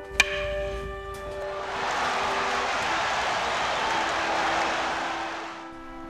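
Intro music with held brass-like notes fading out, a sharp crack just after the start, then a noisy swell that lasts about four seconds and dies away.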